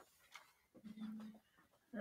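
A dog giving one faint, short whine about a second in, amid faint rustles.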